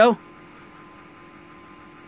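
Steady low background hum with a faint steady tone, after the tail of a spoken word at the very start.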